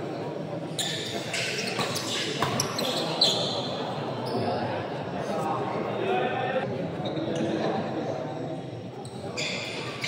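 Badminton racket strikes on the shuttlecock during doubles rallies, a cluster of sharp hits in the first few seconds and more near the end. Spectators chatter steadily in the hall, and the sound echoes in the large room.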